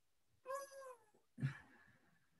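A faint, short, high-pitched vocal call about half a second in, dipping slightly in pitch, followed by a brief breathy sound.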